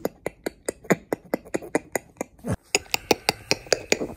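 A sleeping man making a rapid run of clicking mouth noises, about five a second, with a short low falling groan about halfway through.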